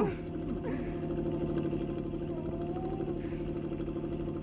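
A vehicle's motor running steadily with a fast, even throb: a cartoon sound effect of a bus or streetcar under way.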